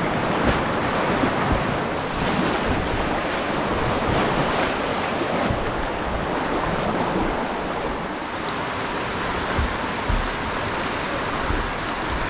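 Steady rush of churning whitewater in a river rapid, heard close to the water, with a few low thumps. The hiss eases a little about two-thirds of the way through.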